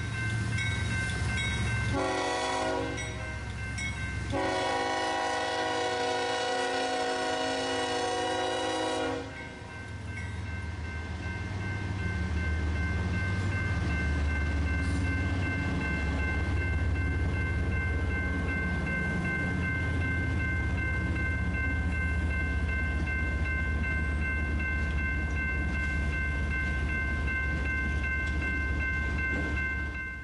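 Freight train led by Union Pacific GE diesel locomotives sounding its multi-chime horn, a short blast about two seconds in and then a longer one of about five seconds. After that the locomotives' diesel engines rumble steadily as the train rolls past, with a steady high whine over them.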